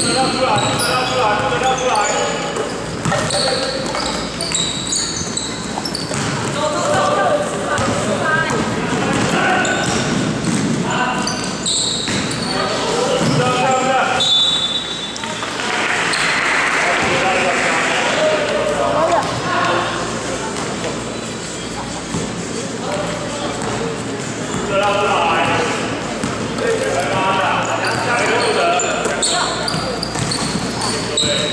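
Basketball being dribbled on a hardwood gym floor during a game, with players shouting and short high squeaks, all echoing in a large hall.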